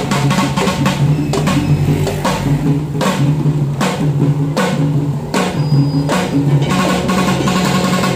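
Children beating improvised hand-held drums made from tin cans and containers in a quick, uneven rhythm of sharp strikes, with sustained low pitched notes underneath.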